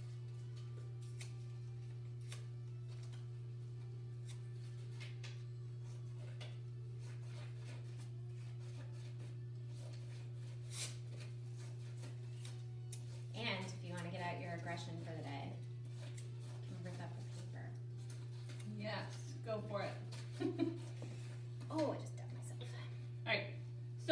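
Scissors snipping construction paper scraps, with paper being torn by hand: a scattered series of short, crisp snips and rips.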